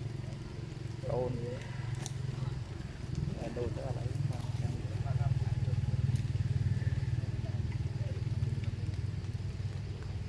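A steady low engine drone, growing louder about halfway through and then easing off, with faint voices now and then.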